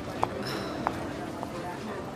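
Footsteps walking away on a hard floor, hard shoes clacking about every 0.6 s, over a low murmur of room ambience.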